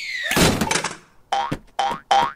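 Cartoon sound effects: a falling whistle-like swoosh that ends in a loud thud about half a second in, then short springy boings, two of them near the end.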